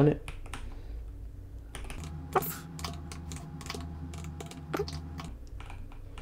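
Computer keyboard typing: scattered, irregular keystrokes as code is entered in an editor.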